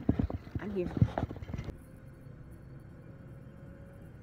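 Brief voice sounds and sharp knocks of a handheld phone, then an abrupt cut, a little under two seconds in, to a faint, steady low rumble of a car cabin on the move.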